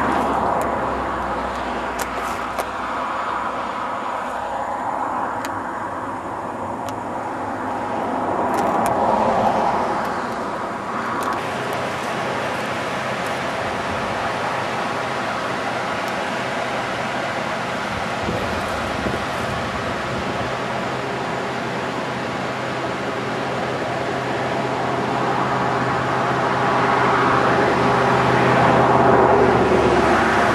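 Steady road and engine noise of a car driving, heard from inside the car. It swells briefly about nine seconds in and grows louder near the end.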